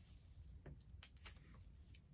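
Near silence: faint room hum with a few light ticks of a card being picked up off a table.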